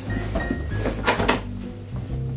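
Background music with steady low notes, over the scrape and rustle of a cardboard box being handled. The scraping is loudest about a second in.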